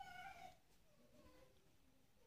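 Faint high-pitched animal call at the very start, lasting about half a second, followed by fainter wavering calls that die away before the end.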